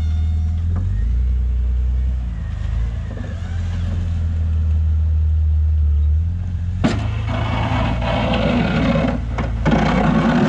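Jeep Cherokee XJ engine running under load while plowing snow, its pitch shifting as the Jeep moves. About seven seconds in there is a sharp knock, and then a rough scraping as the plow blade pushes snow along the pavement.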